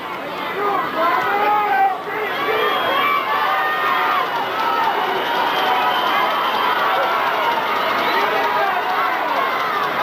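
Stadium crowd noise: many voices shouting and yelling at once, a loud and steady din.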